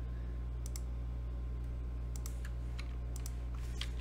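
A few scattered computer keyboard key presses, typing a number into a spreadsheet, over a steady low electrical hum.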